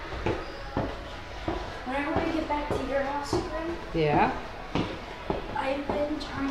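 Footsteps on wooden stairs, sharp knocks roughly every half second or so, under indistinct voices talking that grow loudest about four seconds in.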